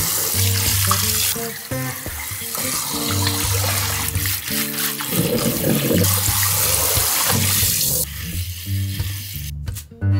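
Kitchen faucet spraying water into a sink over leafy greens being rinsed by hand in a colander and a steel bowl, with background music throughout. The water cuts off about eight seconds in.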